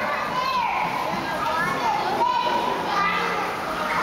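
Children's voices: several young voices talking and calling out at once.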